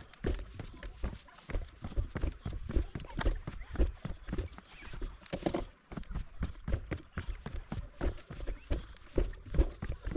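Gravel bike's tyres dropping step by step down a flight of wooden stairs, giving an irregular run of knocks and clatters, several a second, with the bike rattling over each step.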